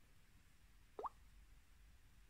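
A single short rising blip about a second in, from the Samsung Galaxy phone's interface sound as the app drawer opens; otherwise near silence.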